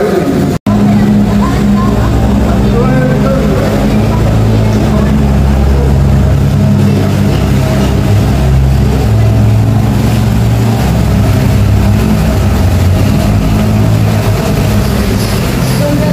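Small tour boat's motor running steadily on water, a low droning hum that grows a little stronger mid-way. The sound drops out for an instant about half a second in.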